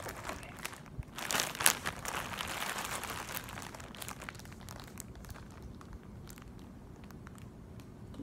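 Plastic poly mailer bag crinkling as it is handled and turned over, busiest in the first few seconds and dying down to faint rustles toward the end.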